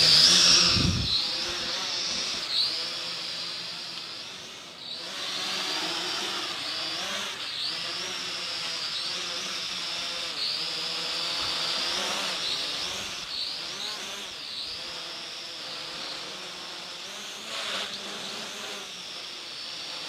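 MJX X601H hexacopter's six motors and propellers buzzing in flight, a high whine whose pitch wavers up and down as the throttle changes. A low rumble in the first second.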